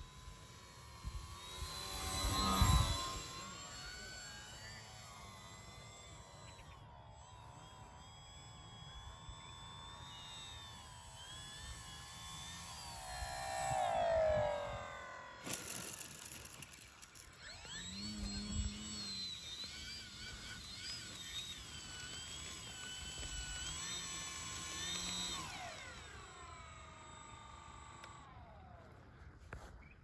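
Electric brushless motor and propeller of a 6S-powered RC aerobatic plane whining, the pitch rising and falling with the throttle. It gets loud on a low pass about two seconds in and again around fourteen seconds with a falling pitch. After touchdown it whines through throttle changes on the ground and winds down near the end.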